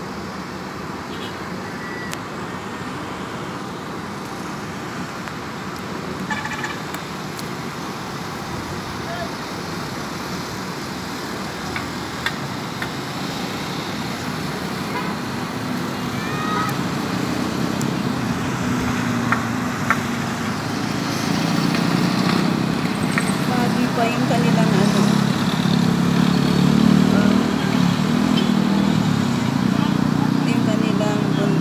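Town ambience of road traffic and indistinct distant voices, with a low rumble that builds up over the second half.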